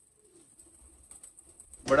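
Faint, low cooing of domestic pigeons, otherwise near quiet.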